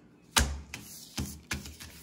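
Playing cards being handled at close range: a few sharp clicks and taps. The first, about a third of a second in, is the loudest.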